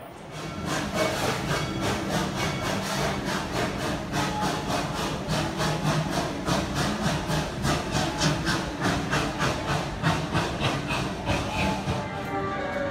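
Steel roller coaster machinery running, with a rapid, regular clacking of about four clicks a second over a steady mechanical hum.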